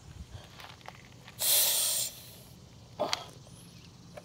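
A short burst of air hissing from a car tire's valve stem as the inflator's air chuck is pressed on, followed about a second later by a sharp click.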